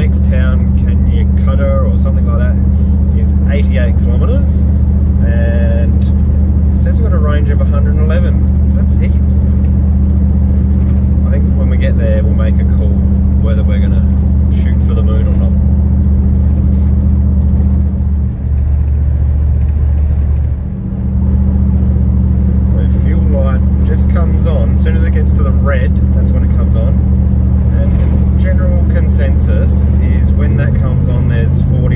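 Steady engine and road drone of a 4WD cruising on the highway, heard from inside the cabin, with two brief dips in the drone near the middle.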